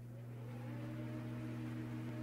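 Steady low electronic hum with a faint, slowly rising tone above it, growing slightly louder: the sound effect of an animated logo sting.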